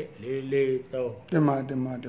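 Speech only: one man talking.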